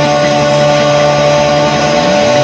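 Rock band holding one sustained chord: electric guitars and bass ring out steadily at a single pitch, loud and unchanging, with no drum strokes.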